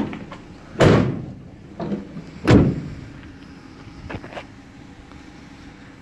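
The rear barn doors of a Renault Master panel van being slammed shut, one after the other: two loud slams about a second and a half apart, with lighter knocks of the latches and handles between and after them.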